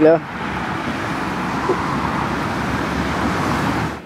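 Steady rush of road traffic, an even, continuous hiss of vehicles with no single car standing out, cutting off abruptly at the end.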